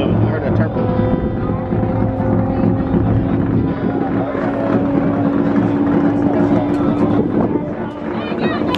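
A race car running flat out down a long runway, heard as a steady engine drone that rises slightly and dies away near the end, with people talking over it.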